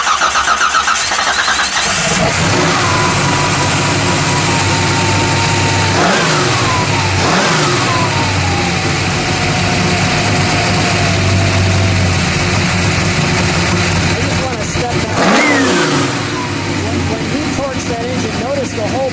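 Fuel-injected 598 cubic inch Shafiroff big-block Chevy V8 running just after starting. It runs fast and uneven for the first couple of seconds, then settles to a steady idle. It is blipped twice about six and seven seconds in and once more about fifteen seconds in, each rev rising sharply and falling back to idle.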